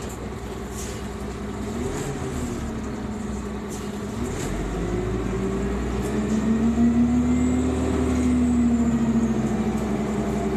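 2001 New Flyer D40LF transit bus heard from inside the passenger cabin: its Cummins Westport ISC-280 engine and ZF Ecomat transmission pull harder from about four seconds in. The low rumble grows, and a drivetrain whine rises in pitch and gets louder, then levels off near the end.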